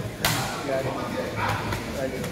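A single sharp slap of two palms meeting in a hand clasp, about a quarter second in, with voices after it.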